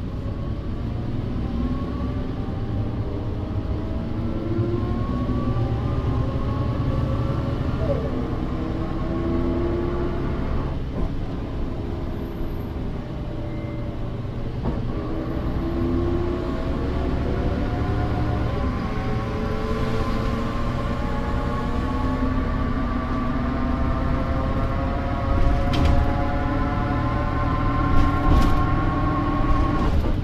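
Inside a 1992 Mercedes-Benz O405 bus under way: the OM447h six-cylinder diesel rumbles, and the drivetrain whine from the ZF 5HP500 automatic gearbox and rear axle rises in pitch as the bus accelerates. The whine eases off about eleven seconds in, then climbs steadily again. A couple of knocks or rattles come near the end.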